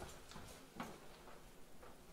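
Faint footsteps on a hard floor: a few light knocks roughly half a second apart in a quiet room.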